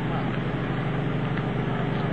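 An engine running steadily, a continuous even rumble that does not rise or fall.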